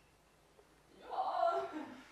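Quiet stage pause, then a person's voice speaking briefly from about a second in.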